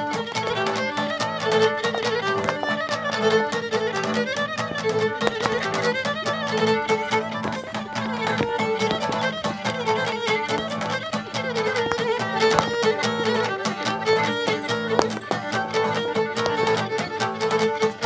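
Cretan lyra and laouto playing a lively tune. The bowed lyra carries the melody over fast, steady strumming on the laouto.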